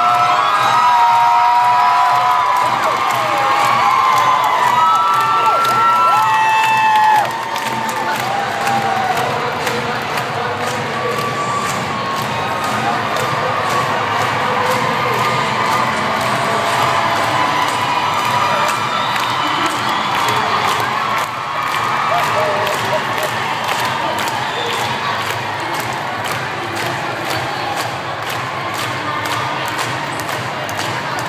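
A large crowd cheering and screaming, with shrill high screams over the top for the first seven seconds. It then drops suddenly to a lower, steady din of cheering and shouting.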